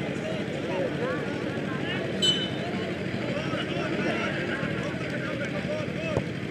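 Crowd chatter: many people talking at once at a moderate, even level. A brief high-pitched sound comes about two seconds in.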